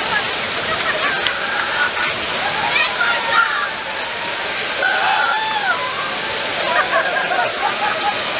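A man-made flash flood: a torrent of water rushes down the set and splashes against the ride vehicle's windows in a loud, steady rush.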